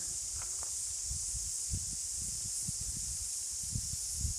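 Steady high-pitched chorus of insects, like a shrill hiss that does not change. Under it is an irregular low rumble of wind on the microphone.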